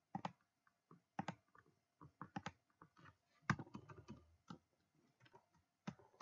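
Computer keyboard keys and a mouse button clicking in faint, irregular taps as a calculation is typed in.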